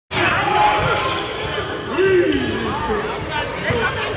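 Basketball bouncing on a hardwood gym floor during play, a few scattered thuds, amid players' shouts and voices, echoing in a large gym.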